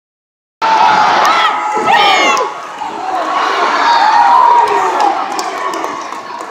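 Large arena crowd cheering and shouting, with single voices yelling close by, one loud yell about two seconds in. It starts abruptly about half a second in.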